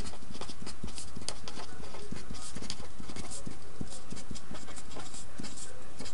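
Pen writing on paper: a run of short, irregular scratches and taps from the strokes, over a steady low background hum.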